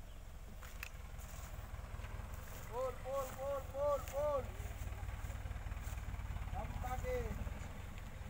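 Dump truck's engine idling with a steady low rumble, while a man gives a run of about five short, repeated shouted calls about three seconds in, and a couple more near the end.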